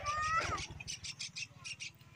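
A bird gives one short call near the start, followed by short bursts of cloth rustling as a bundle is knotted.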